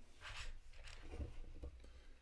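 Faint handling of LEGO bricks: small plastic pieces being fitted and turned in the hands, over a low room hum.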